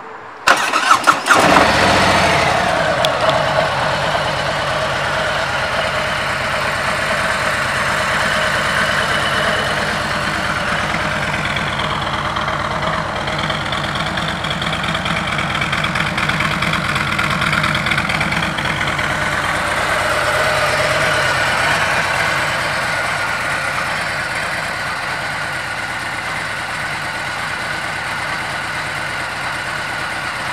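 2017 Harley-Davidson Tri Glide Ultra's Milwaukee-Eight 107 V-twin starting about half a second in, catching quickly and then idling steadily with a low, even pulse.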